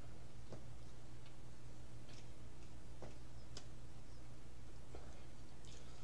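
Faint, irregular small clicks and lip smacks of someone puffing on a tobacco pipe, about seven in six seconds, over a steady low electrical hum.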